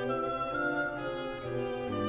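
Orchestral classical music with no voices: a solo oboe melody over strings and continuo, playing a steady instrumental passage.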